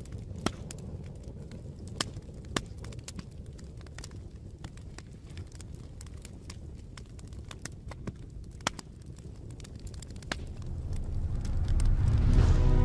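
Small wood fire of twigs and sticks crackling, with irregular sharp pops, the loudest about half a second and two and a half seconds in, over a steady low rumble.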